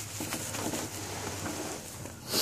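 Plastic bag and nylon gig bag rustling and crinkling softly as the bass inside is handled, over a low steady hum.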